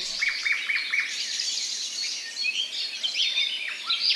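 Several songbirds singing and chirping at once in a morning chorus, their calls overlapping. A quick run of four short, repeated notes comes in the first second.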